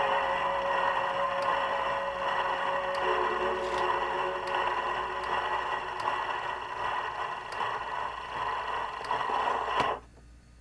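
Shellac 78 rpm record playing on a Supraphon Supralion portable gramophone. The band's last held chord dies away in the first few seconds, then the needle runs on near the label with surface hiss and a faint click about every three-quarters of a second, once per turn of the disc.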